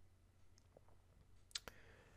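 Near silence: room tone, with two faint clicks close together about one and a half seconds in.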